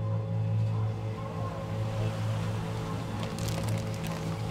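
Ambient music: a low sustained drone with held tones, and a haze of background noise building beneath it. A few brief clicks come near the end.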